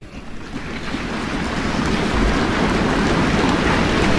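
Large audience applauding, swelling over the first couple of seconds and then holding steady.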